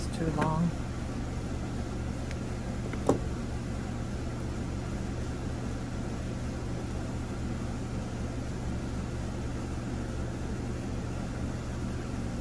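Steady low background hum with one sharp small click about three seconds in, from round-nose pliers working a wire loop on a bead.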